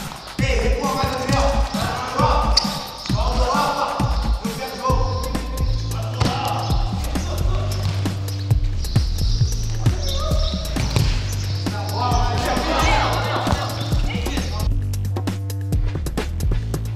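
Background music, with a steady bass line coming in about five seconds in, over the thuds of a futsal ball being kicked and bouncing on a concrete court.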